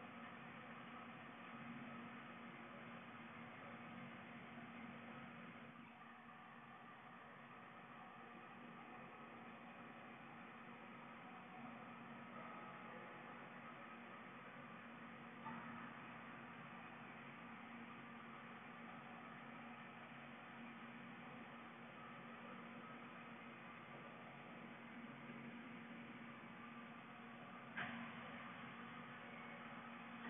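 Near silence: faint room tone with a steady low hum, broken by two faint clicks, one about halfway through and one near the end.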